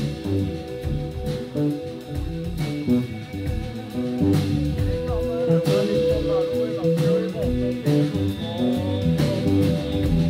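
Live electric guitar, electric bass and drum kit playing an instrumental. About four seconds in the band gets louder, and the guitar holds one long note for about three seconds, with bent, wavering notes around it, over the bass line and drum hits.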